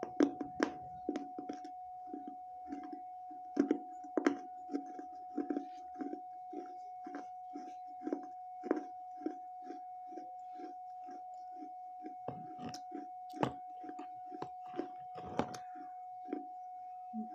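Pieces of a baked clay (terracotta) saucer being chewed close to the microphone: a steady run of crunching chews about twice a second, with a few sharper cracks as harder bits break. A faint steady tone runs beneath.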